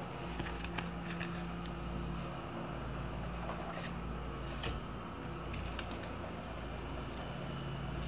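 Steady low background hum of room noise, such as a fan or air conditioning, with a few faint short clicks and taps.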